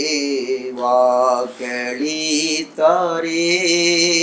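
A man singing a slow Tamil Christian worship song in long, drawn-out phrases.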